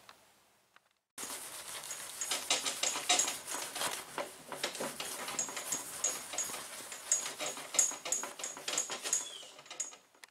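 A towel wet with wax and grease remover scrubbed hard over sticker adhesive on a car door panel: rapid rubbing strokes with short high squeaks, starting about a second in.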